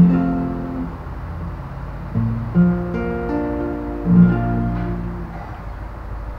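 Acoustic guitar, capoed at the first fret, playing chords that are struck and left to ring: one at the start, another about two seconds in and another about four seconds in, each fading before the next.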